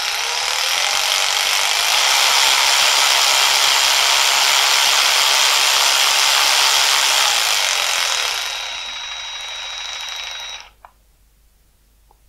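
Yato YT-82902 12 V cordless electric ratchet running free with nothing on its drive, its motor and gearhead whirring with a steady high whine. It builds up over the first two seconds, runs steadily, drops to a lower, quieter level about nine seconds in and stops suddenly near eleven seconds.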